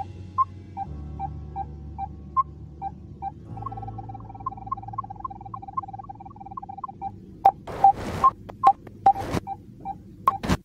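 A regular series of short electronic beeps over a low steady hum, quickening to about five a second a third of the way in, followed by a few sharp clicks near the end.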